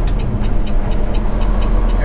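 Peterbilt semi truck's diesel engine running steadily while under way, with road noise and a light, rapid ticking at about six ticks a second.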